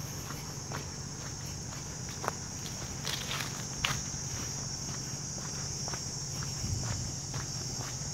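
Insects, crickets or cicadas, making a steady high-pitched buzz, with irregular footsteps on a dirt path and a faint low hum underneath.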